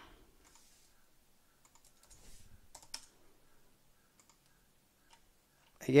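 Faint scattered clicks of a computer keyboard and mouse, a little busier about two to three seconds in.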